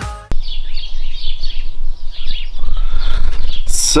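Small songbirds chirping and twittering, over a steady low rumble. A sharp click comes just after the start, and a brief hiss near the end.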